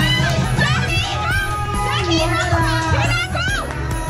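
A group of people laughing and shrieking all at once, over background music.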